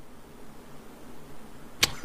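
Quiet studio room tone, then a single short, sharp click near the end, just before a man's voice comes back.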